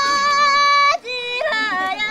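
A single high voice singing a Tibetan folk song in long held notes. The voice breaks off briefly about a second in, then comes back lower and steps through a few pitches.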